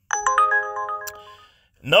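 Uber Driver app's incoming trip-offer alert on a phone: a quick rising run of chime notes that rings on and fades away over about a second and a half, signalling a new delivery request.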